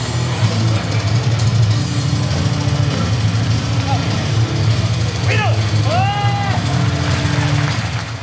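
Loud heavy rock music over arena crowd noise, with two loud shouts from a voice about five and six seconds in.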